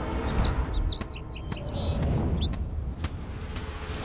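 Small birds chirping, a quick run of short high calls in the first two and a half seconds, over a steady low rumble.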